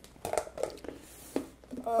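Light handling noise: a few short clicks and crinkly rustles as a plastic food-container lid is picked up and moved on a table.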